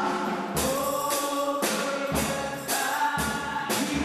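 Gospel worship song sung by a small group of women vocalists on microphones, long held notes sliding between pitches, over amplified band accompaniment with a steady beat.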